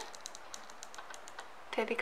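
Faint, quick, irregular light clicks from fingers handling a small plastic glue tube and a thread-wrapped aari needle.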